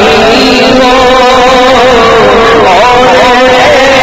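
A man's voice singing a naat into a microphone, a slow, wavering melody with long held notes, over a low, rough noise.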